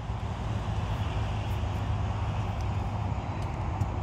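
Steady outdoor background noise, a low rumble with an even hiss over it and no distinct events.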